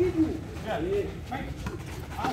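Indistinct voices of players and onlookers calling out around a small-sided football game, short shouts over a steady background murmur.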